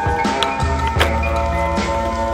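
Music playing over skateboard sounds: the board pops about half a second in, lands with a sharp clack about a second in, and then the wheels roll on concrete.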